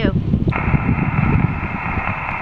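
Ham transceiver's speaker hissing with 15-metre band noise, switching on sharply about half a second in as the push-to-talk is released and the radio drops back to receive. Wind rumbles on the microphone underneath.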